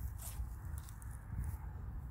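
Wind buffeting the microphone, a low uneven rumble, with a couple of faint rustles near the start.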